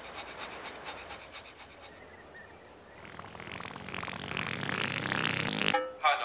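Show sound effects: a fast, even, sparkly ticking as the Teletubbies windmill spins, fading out about two seconds in. Then a whirring mechanical sound that grows steadily louder as a voice trumpet rises out of the ground, and it stops just before the end.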